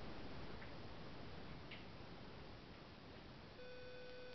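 Faint steady background hiss of room tone, with two faint ticks about a second apart. A steady electrical hum comes back in near the end.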